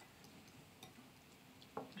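Near silence with a few faint clicks of a fork against a glass mixing bowl as a cream cheese filling is stirred.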